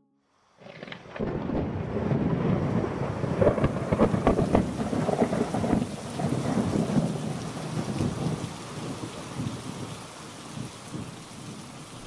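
Thunderstorm: rain with thunder, starting suddenly about half a second in, with sharp cracks and the loudest thunder in the first few seconds, then easing to steadier, softer rain.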